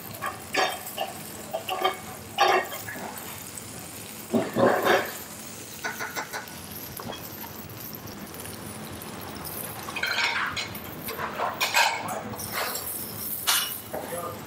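Metal spoon and tongs clinking and scraping against a nonstick frying pan as a fish fillet is basted in its pan juices, with a low sizzle between the irregular knocks; a busier run of clatter comes near the end as the tongs lift the fillet.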